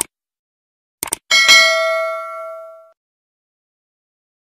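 Sound-effect clicks, one at the start and a quick double click about a second in, then a bright bell ding that rings out for about a second and a half: the stock sound of a subscribe-button and notification-bell animation.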